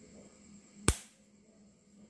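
A single sharp snap a little under a second in, typical of a high-voltage spark discharge from a DIY capacitor-discharge electric fence energizer. It sounds over a faint steady electrical hum.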